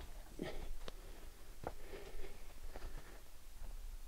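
A hinge-cut tree being rocked back and forth by hand: a few faint, scattered cracks and rustles from the wood and branches.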